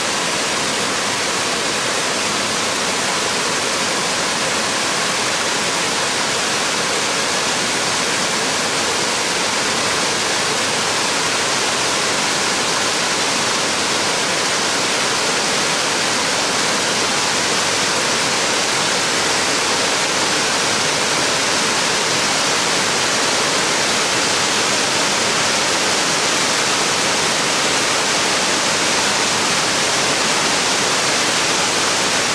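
Waterfall cascade rushing steadily, white water pouring over rock in an even, unbroken noise.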